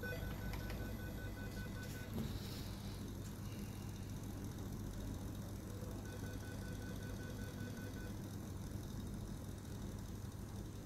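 Rapid high-pitched electronic beeping, about five short beeps a second, in two runs of about two seconds each: one at the start and one about six seconds in, over a steady low hum.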